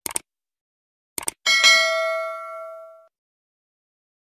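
Sound effect for a subscribe-button animation. Two quick mouse clicks come at the start and two more about a second later. A notification-bell ding follows, ringing out and fading away over about a second and a half.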